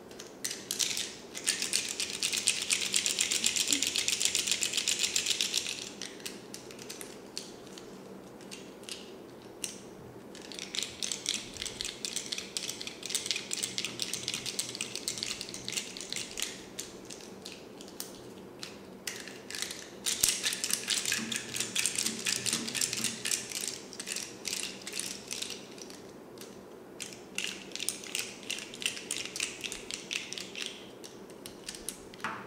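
A bundle of plastic pens rolled and rubbed between the hands, the barrels clicking and rattling rapidly against each other. It comes in four bursts of several seconds each, with short pauses between.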